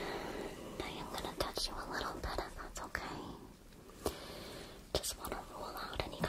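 A person whispering softly, broken by several sharp clicks.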